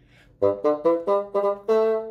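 Solo bassoon playing a short phrase of the theme in crisp, tongued notes: about six notes in quick succession, ending on a longer held note, the accented A the phrase aims for.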